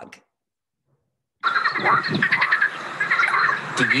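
A chorus of frogs calling, many overlapping rapid calls, starting suddenly about a second and a half in.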